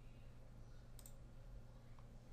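Near silence with a low steady hum, broken by a single faint computer mouse click about a second in.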